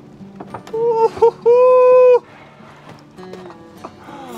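A short dramatic sting of three notes: two quick notes and then one long held note, all on about the same pitch. It is loud and ends abruptly about two seconds in. Light knocks of footsteps on a wooden deck run around it.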